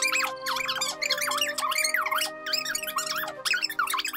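Cartoon background music: sustained held notes under a quick run of squeaky, sliding pitch effects that bend up and down several times a second.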